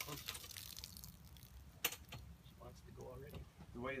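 Naturally aspirated Perkins marine diesel idling low and steady just after its first cold start of the season, with a sharp click about two seconds in.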